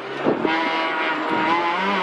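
Peugeot 206 RC Group N rally car's 2.0-litre four-cylinder engine under hard acceleration, heard from inside the cabin. Its note dips briefly about a quarter second in, then the revs climb steadily.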